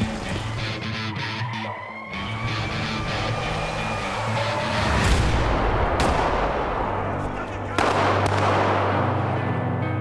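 Trailer music score mixed with action sound effects: a slowly rising and falling tone over the first few seconds, a noisy rush about five seconds in, a single sharp pistol shot about six seconds in, and a heavy swell of noise near eight seconds.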